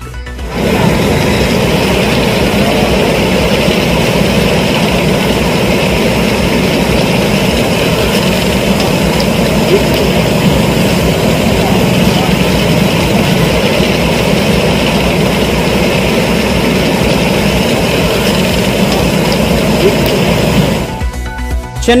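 Steady, loud rush of flowing floodwater from a river in spate, heard as an even roar with a faint background music bed under it.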